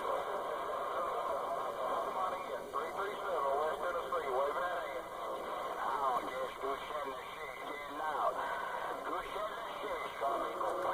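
A CB base radio's speaker receiving on AM: a distant station's voice coming in weak and garbled through steady static, too faint and distorted to make out words.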